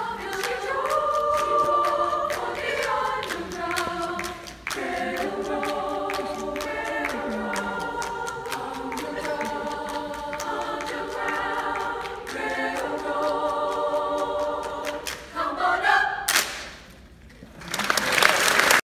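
Women's choir singing in close harmony without accompaniment, kept in time by rhythmic hand claps. The final chord is cut off about sixteen seconds in, and audience applause breaks out near the end.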